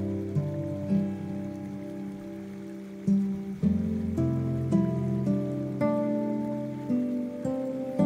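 Soft acoustic guitar playing a slow melody of single picked notes, each ringing and fading, with a brief lull before the melody picks up again. A faint hiss of rain runs underneath.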